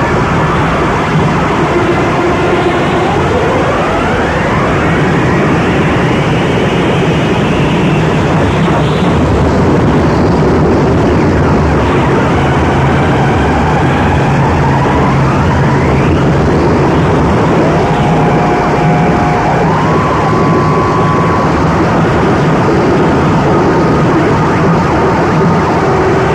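Japanese harsh noise music: a loud, unbroken wall of distorted electronic noise, with whistling tones sweeping up and down through it. Near the end, a pair of tones steps up in pitch.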